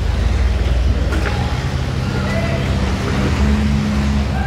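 A large engine running steadily, a loud low drone with a constant pitch, with faint voices of people around it.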